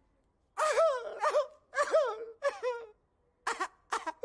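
A man crying and wailing in a string of short sobbing cries whose pitch swoops up and down. The cries start about half a second in.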